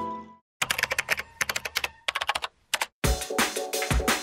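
Computer keyboard typing in quick runs of keystrokes, starting shortly after a brief silence. About three seconds in, electronic music with a strong, regular beat comes in.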